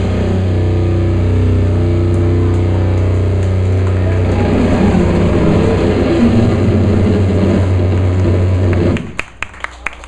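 Loud, steady drone of an amplified electric bass and guitar left ringing after the drums stop, a deep hum with held notes above it that waver in the middle. It cuts off abruptly about nine seconds in, followed by scattered claps.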